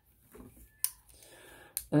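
Plastic parts of a Transformers Earthrise Wheeljack action figure being handled during transformation: one sharp click a little under a second in as a part snaps into place, followed by faint plastic rubbing.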